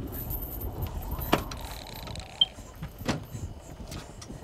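Low steady rumble with a few sharp clicks scattered through it, the loudest just over a second in.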